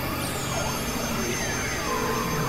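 Experimental synthesizer noise music: a dense, steady wash of noise and hum with tones sliding in pitch. A high tone glides down just after the start and then holds.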